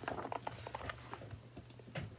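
Sheets of paper being handled close to the microphone: soft rustling with a quick, irregular run of small clicks and taps.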